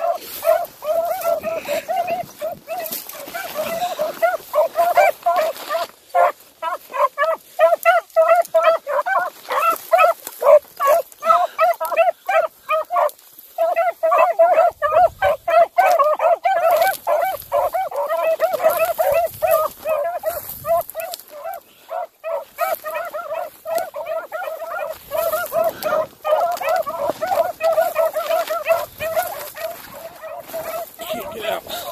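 A pack of rabbit hounds baying in a dense, overlapping chorus of quick, repeated calls: the sign of the hounds running on a rabbit's scent. The calling breaks off briefly about halfway through, then picks straight back up.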